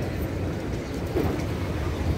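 Steady low rumble of outdoor street noise.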